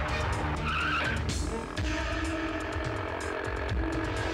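Dubbed film sound effects of a motorcycle engine running and a brief tyre skid about half a second in, over background score music.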